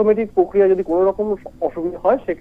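Speech only: a man talking in Bengali, a news correspondent's report.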